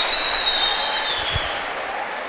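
Large audience applauding, the clapping easing off gradually.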